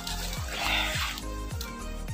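Background music with a steady beat, about two beats a second, and sustained tones. A brief rustling noise rises over it about half a second in.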